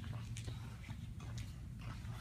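Footsteps on a concrete floor, about two light steps a second, over a steady low hum.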